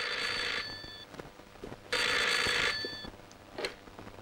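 Desk telephone ringing: a ring that stops about half a second in, then one more ring of under a second about two seconds in.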